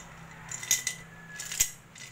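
Hard king coral bracelet beads clicking against each other and the table as they are handled, in two short clusters of sharp clicks, the second one near the end the loudest.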